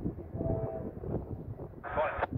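Wind rumbling and buffeting on the microphone, with a faint distant locomotive horn sounding through it. A short, higher-pitched burst of noise comes near the end.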